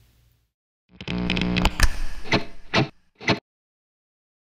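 A short guitar phrase: a ringing chord followed by a few sharp struck notes, lasting about two and a half seconds and cutting off abruptly.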